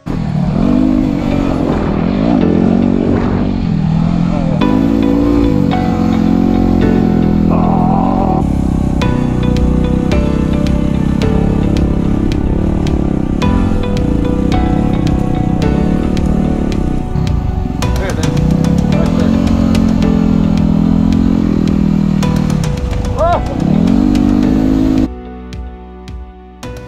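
Yamaha WR250R's single-cylinder four-stroke engine revving up and down repeatedly while being ridden, with background music over it. The engine sound cuts off suddenly about a second before the end.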